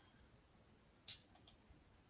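Faint computer mouse clicks in near silence: one click about a second in, then two quick ones.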